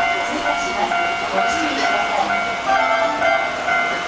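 Keihan Main Line electric train running through the station beside the level crossing, with the crossing's alarm ringing steadily throughout.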